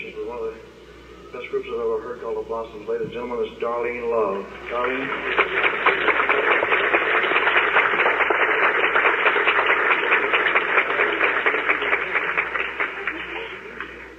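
A man's voice over a live concert sound system, then audience applause breaks out about five seconds in and is the loudest sound, lasting about eight seconds before dying down.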